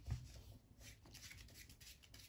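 Faint rustle and light clicks of a deck of playing cards being handled and squared up, with one slightly louder tap just after the start.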